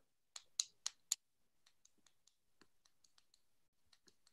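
Faint clicking at a computer: four sharp clicks in quick succession in the first second or so, then scattered fainter clicks.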